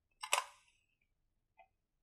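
A sheet of paper being put up on a whiteboard: a short sharp clack with a quick papery rustle about a quarter-second in, then a faint tick just after halfway.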